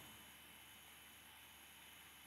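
Near silence: room tone with a faint steady hiss and a thin high-pitched whine.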